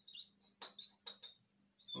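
Whiteboard marker squeaking as it writes on the board: a run of short, faint, high squeaks, one per stroke, that stop shortly before the end.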